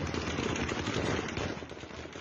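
Continuous gunfire: a dense, rapid crackle of shots with no clear pauses.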